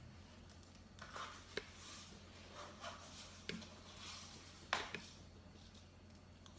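Faint, scattered small clicks and ticks, about half a dozen, of nonpareil sprinkles being thrown onto chocolate-coated pretzels on parchment paper.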